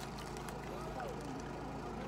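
Steady low hum of a car's running engine, heard inside the cabin, with a faint short vocal murmur about a second in.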